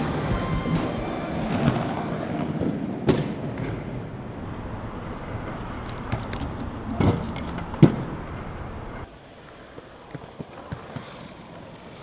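Inline skate wheels rolling over concrete, with sharp knocks of skates striking and landing, the loudest about two-thirds of the way through. Soundtrack music fades out over the first couple of seconds, and the last few seconds are quieter, with light scuffs and clicks.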